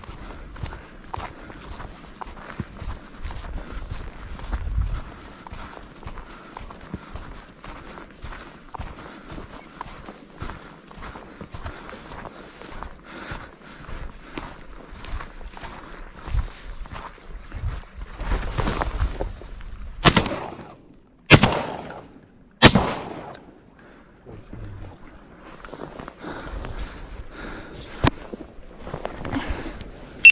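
Three shotgun shots fired at flying ducks, about a second and a quarter apart, each echoing across the open river valley.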